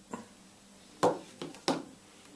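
Handling knocks: four short, sharp knocks, the loudest about a second in and another near the end, with quiet between.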